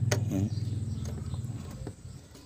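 A low, steady engine-like hum that fades away, with a faint click or two.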